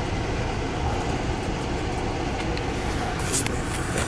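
Steady low rumble of a moving Amtrak passenger train heard from inside the car, with a brief hiss about three seconds in.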